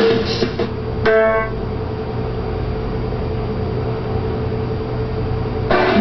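Television station-bumper music heard through a TV speaker: a rock guitar riff ends in the first half second, a single pitched note sounds about a second in and dies away, then a steady low hum fills the rest until a short burst of sound near the end.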